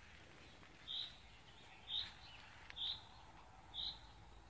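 A bird repeating a short, high call note about once a second, four times, faint over quiet outdoor background noise.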